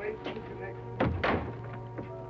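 Background music with a low sustained note, and a single thud about a second in.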